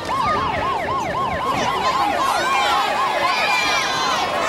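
A siren-like warbling tone that rises and falls about four times a second for roughly three seconds, then stops, with crowd voices underneath.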